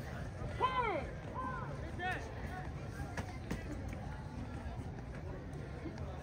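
Voices shouting drawn-out calls that rise and fall in pitch, about half a second in and again twice within the next two seconds, over a steady low crowd murmur, with a few sharp clicks.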